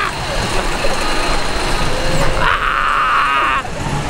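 Wind rushing over the microphone and the rumble of a small wild-mouse-style roller coaster car running along its track. A high-pitched sound rises about two and a half seconds in and lasts about a second.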